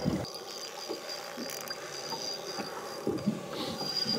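Quiet open-air background on a small boat: a low steady hiss with a faint, thin, steady high whine, and no distinct event.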